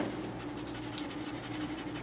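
Charcoal pencil scratching across toned drawing paper in a run of short, quick shading strokes.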